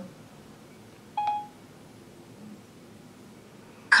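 A single short electronic chime from an iPhone's Siri assistant about a second in, the tone it gives once it has taken a spoken request; otherwise quiet room tone.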